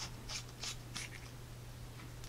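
Sofirn SP40 flashlight headlamp being twisted open by hand, its machined metal threads rasping: four short scratchy strokes in about the first second, fainter after.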